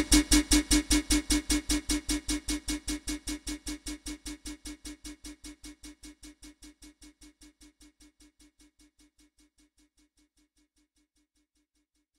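Brazilian funk beat ending: a quick, even pulse with deep bass and one steady note, fading out to silence by about seven seconds in.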